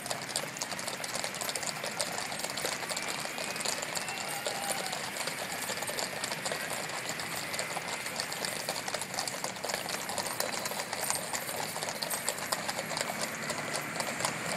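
Hooves of a column of cavalry horses clip-clopping on an asphalt road: many overlapping hoofbeats in a dense, rapid clatter.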